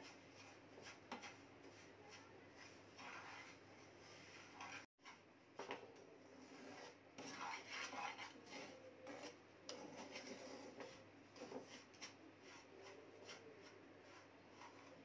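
Faint scraping and rubbing of a wooden spatula stirring semolina roasting in ghee in a nonstick frying pan, with a brief break in the sound about five seconds in.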